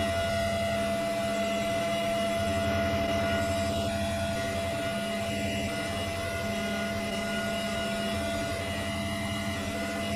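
Steady hum with several constant tones over a faint even hiss, unchanging throughout.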